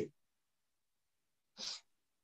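Silence, broken about one and a half seconds in by one short breathy noise from a person at the microphone.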